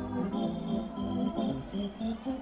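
Electric organ, Hammond-style, playing a brisk melody, its notes changing several times a second.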